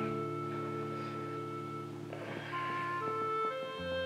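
Soft, slow background score of long held notes forming sustained chords, the harmony shifting about two seconds in and again near the end.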